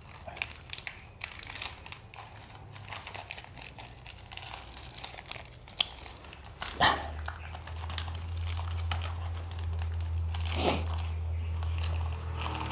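Plastic wrapping crinkling and rustling in short bursts as small packets are unwrapped by hand, with two louder sharp sounds about seven and eleven seconds in. A low steady rumble grows louder in the second half.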